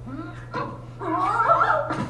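Animated-film soundtrack played through a TV's speakers: a cartoon character's short high-pitched cries, then a longer wavering, whimpering cry in the second half, over a steady low hum.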